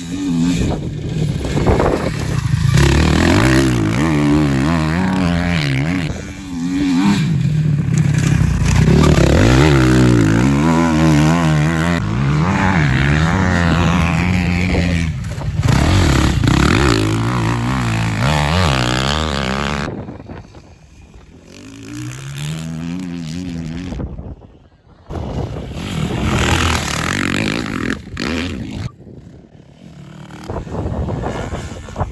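Dirt bike engine revving hard on a motocross track, its pitch rising and falling with throttle and gear changes. The sound drops away suddenly about twenty seconds in, runs quieter and more distant for a few seconds, then grows loud again near the end as the bike comes close.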